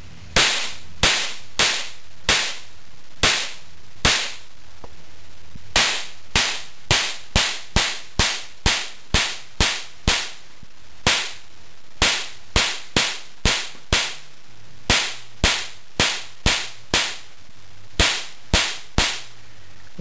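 Modified spark plug (resistor removed, a washer in place of the screen) firing as a plasma spark, driven by a 330 µF capacitor charged to about 220–300 V: a string of sharp, loud snaps at an irregular rate of about two a second, with a short pause about four and a half seconds in.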